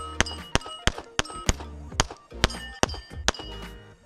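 A Canik TP9 SFx 9mm pistol fired in a quick, uneven string of about nine shots. Hits on the AR500 steel plates ring out with a clear metallic ping that lingers after several of the shots.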